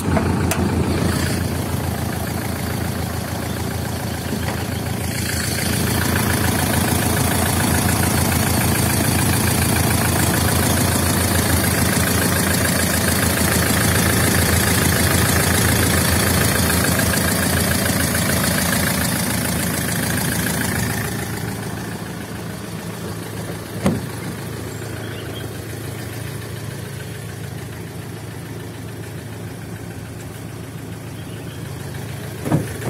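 Mitsubishi Strada Triton's DI-D turbodiesel engine idling steadily. It is loud and hissy close up in the engine bay from about 5 to 21 seconds in, then quieter and duller from the cabin, with one sharp knock a few seconds later.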